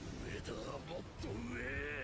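A man's voice from the anime episode's soundtrack, shouting in a strained, rising voice near the end ("Higher! Higher!").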